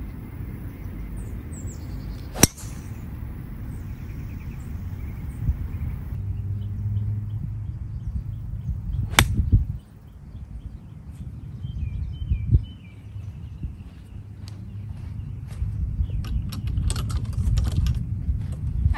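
Two sharp strikes of a golf club on the ball: a driver off the tee a couple of seconds in, then a 58-degree wedge shot about seven seconds later. A low wind rumble runs underneath, with faint bird chirps near the middle.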